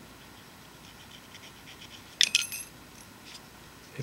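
Faint scraping of a needle file deburring a small metal slit-lamp control handle, then a brief, sharp metallic clink with a high ringing tail about two seconds in.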